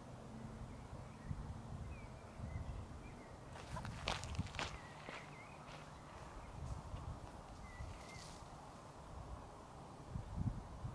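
Faint footsteps on dry grass and stony ground, with a cluster of sharper crackling steps about four to five seconds in.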